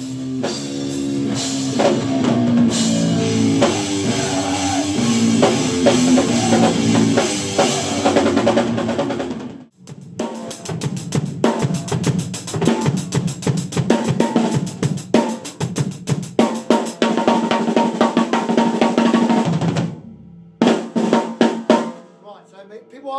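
Drum kit played hard with bass drum and snare, over a fuller band sound for the first half. It breaks off suddenly about ten seconds in, followed by fast, dense drumming for about ten seconds, a short pause, and a few single hits near the end.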